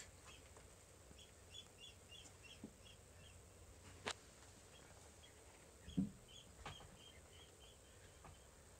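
Faint bird chirping: two runs of short chirps, about three a second, with a sharp click about four seconds in and a soft thump about six seconds in.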